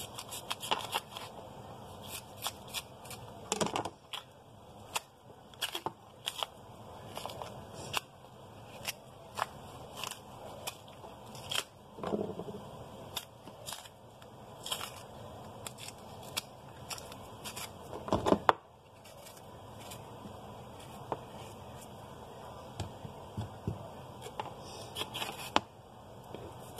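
Small kitchen knife slitting and prying the peel off green bananas: scattered small clicks and scrapes of blade and peel, some against a plastic cutting board, with one louder knock about two-thirds of the way through.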